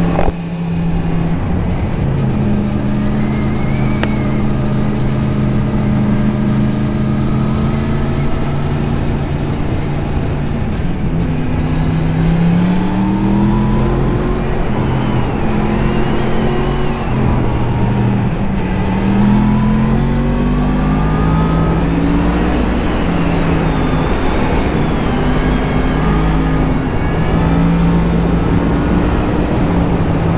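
Motorcycle engine running under way. It holds steady revs at first, then from about eleven seconds in it rises and falls in pitch several times as the bike accelerates and shifts gears.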